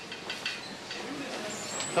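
Restaurant kitchen background during service: faint, indistinct voices over a steady noise, with a brief thin high tone near the end.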